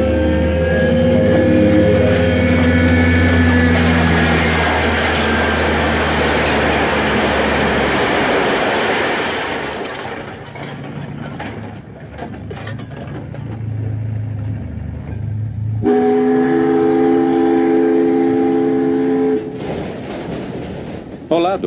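Low horns sounding in long, steady chords of several notes over a broad rushing, rumbling noise that fades about ten seconds in. Scattered clatter follows, then another horn blast of several notes is held for about three and a half seconds near the end.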